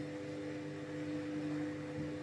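Steady electrical hum of a running household appliance: a constant drone carrying two steady tones, unchanging throughout.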